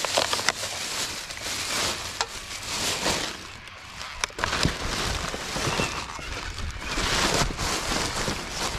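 Thin plastic shopping bags rustling and crinkling as rubbish is rummaged through and pulled out of a wheelie bin, with scattered crackles and light knocks of plastic and cardboard being handled.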